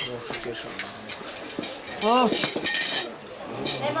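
Talk around a meal table with the light clinks of glasses and cutlery; one voice calls out loudly about two seconds in, followed by a cluster of sharp clinks.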